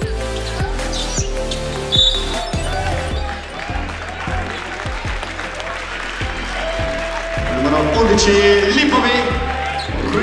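Music with a steady beat playing over the arena sound system at a basketball game, with crowd voices. The voices grow louder over the last couple of seconds.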